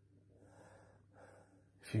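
A man ill with COVID-19 takes two faint, audible breaths in a pause between sentences, breathing that goes with the shortness of breath and tight lungs he describes. He starts speaking again right at the end.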